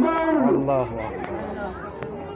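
Several people talking over one another in a close crowd, one near voice wavering in pitch at the start before the chatter thins out.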